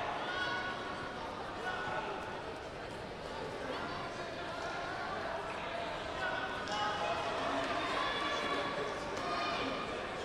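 Indistinct voices and calls from several people echoing through a large sports hall, with a few faint thuds.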